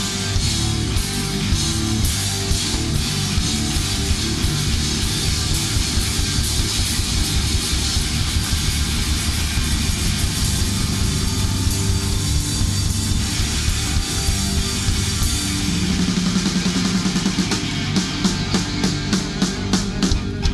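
Instrumental stretch of a hard rock song, with electric guitars over a drum kit and no singing. In the last couple of seconds it breaks into evenly spaced hits, about two a second.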